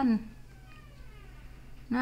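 A domestic cat in a plastic pet carrier gives a faint, drawn-out meow that falls in pitch, lasting about a second; the cat is unwell with a sore paw.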